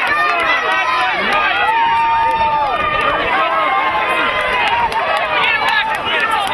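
Many voices shouting and calling out at once during a lacrosse game, overlapping steadily so that no single word stands out.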